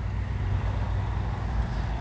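Steady low outdoor rumble with a constant hum underneath, and no distinct events.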